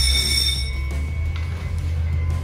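Background music with a steady low bass. A high, bell-like ringing tone holds through the first second and cuts off suddenly.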